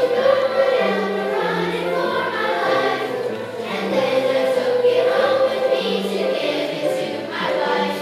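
Large children's chorus singing a song together.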